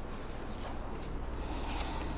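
Quiet room with a steady low hum and faint rustling and handling noises as a small object is picked up.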